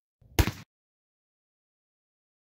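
A single short, sharp knock about half a second in, cut off abruptly.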